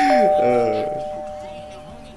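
Two-note ding-dong doorbell chime: a higher note, then a lower one just after it, both ringing on and slowly fading away.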